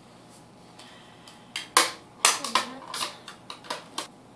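Small plastic makeup items, an eyeshadow compact and a brush, being set down and put away. It comes as a quick run of sharp clicks and clatters that starts about a second and a half in, with the two loudest knocks close together around two seconds in.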